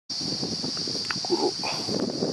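Steady high-pitched drone of insects in dry forest, with a brief low animal call a little over a second in.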